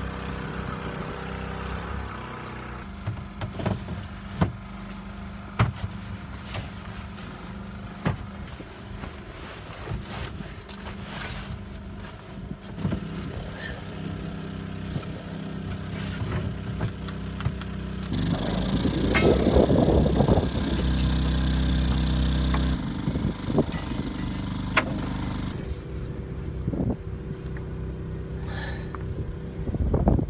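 Scattered clicks, knocks and rustles of a boat's bimini canvas, frame and lines being handled, over a steady low hum. A louder rush of noise comes about two-thirds of the way through.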